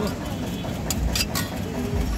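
A metal spatula scraping and clicking against a large flat metal griddle, with a few sharp clicks in the second half, over street noise with a low rumble and background voices.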